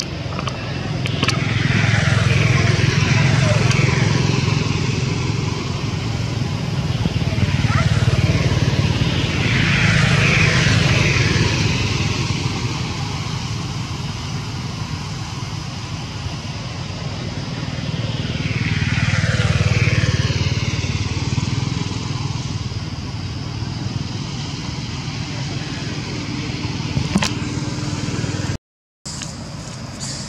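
Motor vehicles passing by: engine noise swells and fades three times, around two to four, eight to eleven and nineteen to twenty seconds in.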